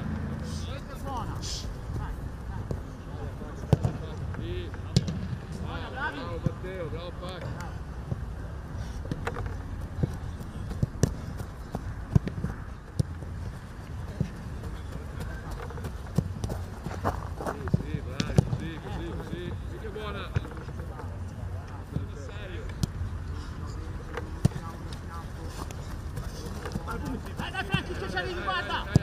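Footballs being struck in a shooting drill: sharp thuds at irregular intervals, a few seconds apart, over distant shouting voices of players and coaches.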